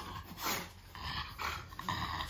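A French bulldog breathing noisily in short, irregular pants and snuffles as it sniffs about.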